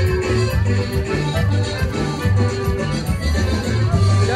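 Live accordion music: an accordion plays a lively dance tune over a pulsing bass line.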